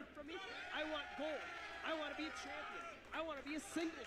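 Faint, indistinct man's voice talking, too quiet to make out words.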